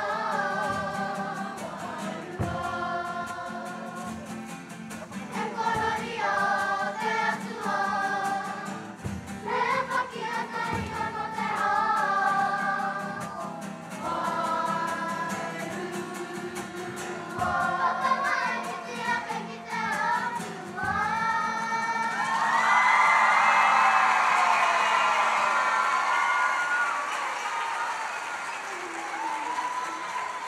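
Children's kapa haka group singing a waiata together to guitar accompaniment, with a few low thuds. About 22 seconds in the song ends and the audience breaks into loud cheering and applause, which fades toward the end.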